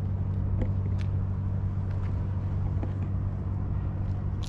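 A steady low mechanical hum from an engine running nearby, with a few faint light ticks over it.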